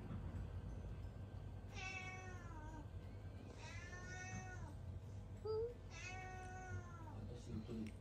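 A domestic cat meowing three times, each meow drawn out for about a second and dropping in pitch at the end.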